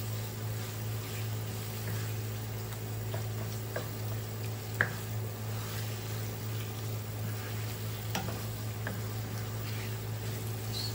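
Chopped onions, tomatoes and peppers sizzling in a non-stick frying pan as a wooden spatula stirs and scrapes them. A few sharp knocks of the spatula on the pan stand out, the loudest about five seconds in, over a steady low hum.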